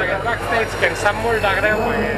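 Indistinct voices of several people talking close by, over a steady low hum.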